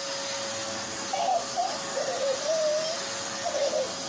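Upright vacuum cleaner running: a steady motor noise with a constant whine. A baby's voice rises and falls over it a few times.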